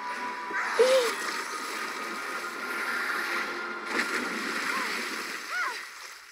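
Cartoon soundtrack of water splashing and sloshing as a giant fish monster moves in the sea, with a few short vocal sounds over it.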